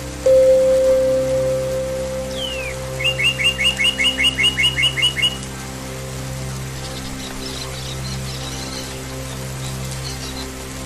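Songbird singing over calm ambient music. The bird gives a falling whistle, then a quick run of about a dozen chirps at roughly five a second. The music's steady drone carries on underneath, with a held note starting just after the beginning.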